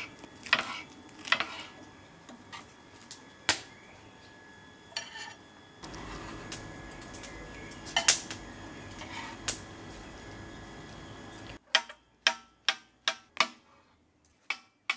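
Kitchen knife cutting red pepper and other vegetables on a cutting board: scattered knife clicks and taps, ending in a run of quick, even chops about three a second.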